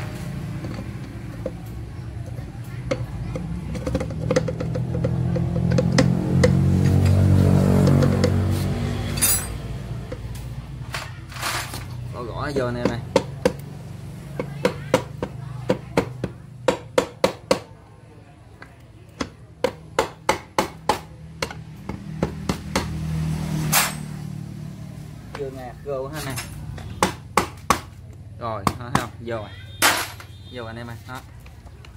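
Runs of sharp knocks and taps on a motorcycle engine's aluminium side casing as the clutch cover is seated onto the crankcase. They come in quick clusters from about a third of the way in. Over the first third there is a low rumble, and music and voices play in the background.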